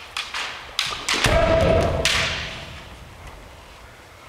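Kendo sparring on a wooden floor: a few sharp clacks of bamboo shinai and footfalls, then about a second in a loud attack, a held kiai shout over the thump of a stamping foot, that fades out over the next second or two.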